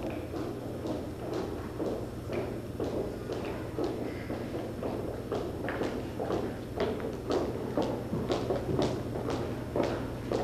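Footsteps of several people walking on a hardwood hall floor, heeled shoes clicking in an uneven patter that grows more frequent in the second half. A low murmur and shuffling from a standing crowd and a steady low hum lie underneath.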